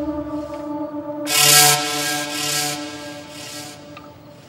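Film background score: sustained drone chords with a rhythmic rasping, scraping noise laid over them in three swells. The chord shifts about a second in, and the whole fades toward the end.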